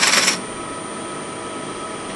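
Bowl gouge cutting a spinning sugar maple bowl on a wood lathe. The cutting noise stops suddenly about a third of a second in, leaving the lathe running with a steady hum.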